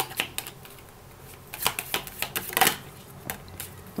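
A deck of round cardstock oracle cards being shuffled by hand: a run of quick papery clicks and flicks, densest in a burst around the middle, with a few single ticks before and after.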